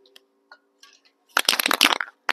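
Aerosol can of clear coat being shaken, its mixing ball rattling in a fast run of sharp clicks that starts past halfway, after a few faint handling clicks.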